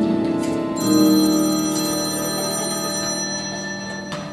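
Stage musical's pit orchestra playing held chords. About a second in, a high bell-like ring is struck and fades away over the next two seconds.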